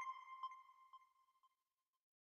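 Faint tail of an electronic ping sound effect: a single high tone repeating as echoes about twice a second, each fainter than the last, dying away before the end.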